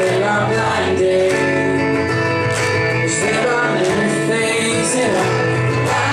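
Steel-string acoustic guitar strummed steadily, with singing over it, played live.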